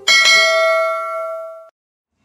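A single bell chime struck once, loud, ringing with several overtones as it fades, then cut off abruptly short of the end.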